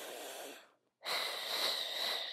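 A woman breathing audibly through the mouth while holding the Pilates hundred: a short breath, a brief pause, then a longer, steady breath.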